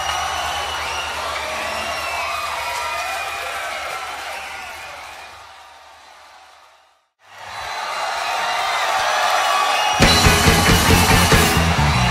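Festival crowd cheering and whooping over a held low bass note that fades away to silence about seven seconds in. Crowd noise fades back up, and about ten seconds in the rock band starts the next song loudly, with bass and drums.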